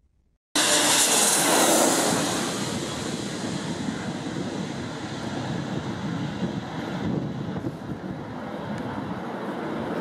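Jet airliner engine noise that starts suddenly about half a second in, is loudest in the first couple of seconds, then eases off slowly while staying steady.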